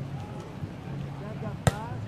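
A single sharp slap about one and a half seconds in: a hand striking a beach volleyball, with voices faint behind it.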